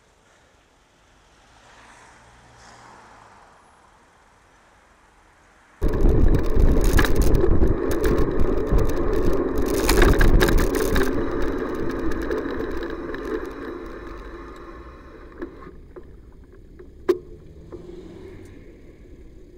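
Wind buffeting and road rumble on the microphone of a handlebar-mounted camera while riding. It comes in suddenly about six seconds in, stays loud for about five seconds, then fades as the bike slows to a stop. Two sharp clicks near the end.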